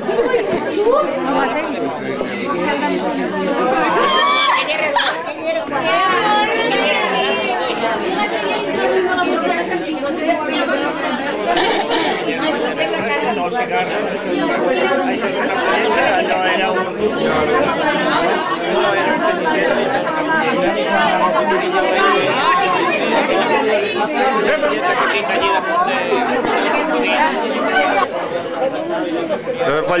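Many guests at a dinner table talking at once: a steady, unbroken chatter of overlapping voices.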